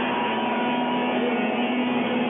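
Heavy metal band playing live, with distorted electric guitars holding a sustained, droning chord as one steady tone.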